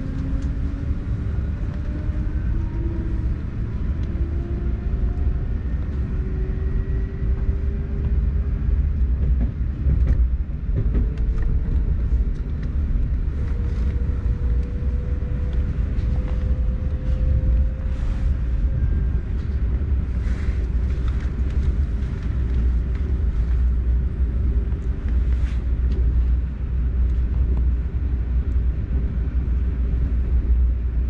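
Suburban electric train in motion, heard from inside the carriage: a steady low rumble of the wheels and running gear. Over it, a faint electric motor whine rises slowly in pitch as the train gathers speed, with occasional sharp clicks.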